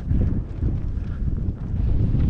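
Wind buffeting the camera microphone: a loud, gusty low rumble that rises and falls.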